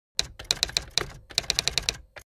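Typewriter key-strike sound effect: a quick, uneven run of about a dozen sharp clicks with a short pause just past the middle.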